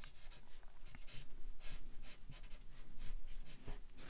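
Yellow Chartpak marker rubbed over plain printer paper in quick, repeated short strokes, filling in a colored area.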